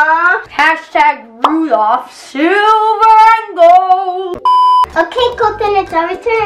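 A child's voice in sing-song vocalizing, with long gliding and held notes that carry no clear words. About four and a half seconds in, a short, steady electronic beep, followed by more children's voices.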